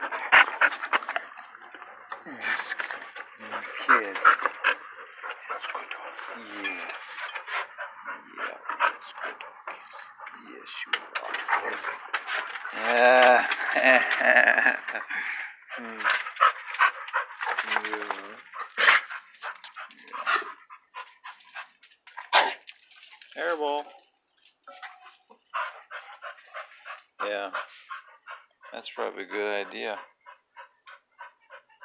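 Dogs panting and licking close to the microphone, with indistinct vocal sounds throughout.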